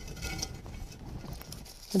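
Faint handling noise: light rustling and a few small clicks as barked wire is pulled taut around a terracotta vase among leaves.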